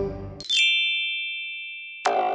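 A bright, bell-like ding sound effect strikes about half a second in and rings on, fading slowly, marking the magical change of the food into a toy. The tail of the children's background music fades out just before it.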